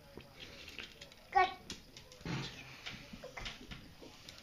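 A baby's short, high-pitched squeal about a second and a half in, followed by softer vocal sounds.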